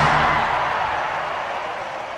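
A film trailer's closing soundtrack swell dying away: a toneless, hissing wash that fades steadily over the two seconds.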